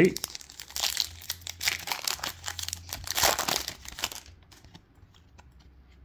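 A Topps Chrome baseball card pack's wrapper being torn open and crinkled by hand: a run of crackling for about three and a half seconds, then faint clicks as the cards are handled.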